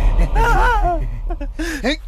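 A person's voice making a quick run of short cries or gasps, each rising and falling in pitch, in two bursts.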